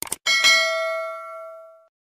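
End-screen sound effect: two quick clicks, then a bright notification-bell ding that rings out and fades over about a second and a half.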